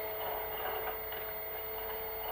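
A steady hum of several held tones over faint background noise.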